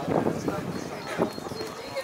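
People talking among themselves while walking, with footsteps on cobblestones.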